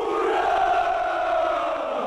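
A large group of soldiers' voices shouting together in one long, held cheer.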